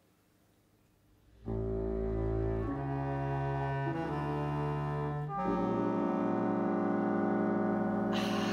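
Near silence for about a second and a half, then a symphony orchestra comes in with sustained chords, deep in the bass, that shift to new harmonies about three times.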